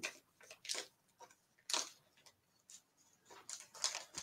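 A handful of faint, short clicks and rustles, spread apart with quiet between them.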